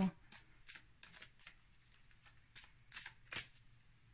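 A deck of tarot cards being shuffled by hand: a quiet run of short, irregular card flicks and taps, the sharpest about three and a half seconds in.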